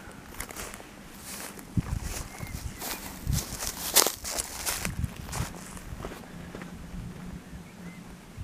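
Footsteps of a person walking over grass and dirt on a mountain path: a series of uneven footfalls with some scuffing, the loudest about four seconds in.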